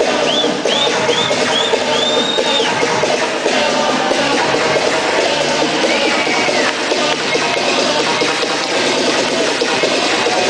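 Loud electronic dance music from a DJ set, playing over a party sound system. In the first three seconds a run of short, high arching tones sounds above it, four quick ones and then a longer one, and one more comes about six seconds in.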